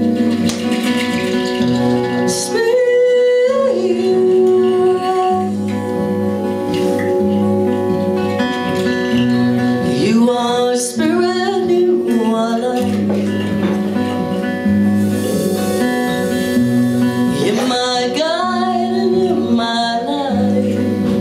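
Live band playing a song: a woman sings over acoustic guitar with electric guitar and bass beneath. She sings three phrases, and long guitar chords ring between them.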